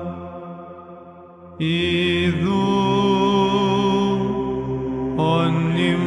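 Greek Orthodox (Byzantine) liturgical chant: a single voice singing long, slowly ornamented held notes over a low sustained drone. One phrase dies away, a new phrase begins about a second and a half in, and another begins near the end.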